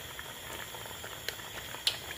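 A pot of seafood cooking on a stove, bubbling softly and steadily. Two light clicks come about a second and a half in and just before the end, the second one the louder, as dried fish is tipped in from a plate.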